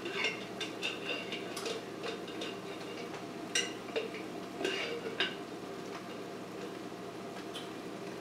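A spatula scraping out a jar of Alfredo sauce and knocking against the jar and skillet, with scattered clinks.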